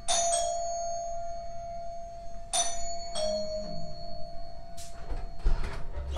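Doorbell chime ringing twice, about two and a half seconds apart, each ring sounding on for a couple of seconds; the second ring steps down to a lower note. A few sharp clicks near the end.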